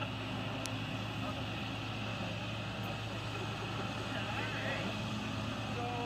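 Steady outdoor background noise of surf and wind on the microphone, with a constant low hum underneath and faint murmured voices.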